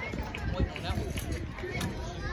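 Overlapping high-pitched young girls' voices calling and chattering across a softball field, with no single clear speaker.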